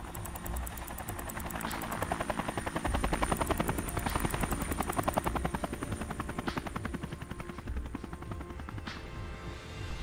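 A helicopter's rotor chop passing over: a rapid, even chopping pulse that swells to its loudest a few seconds in and then fades away, over a low sustained music bed.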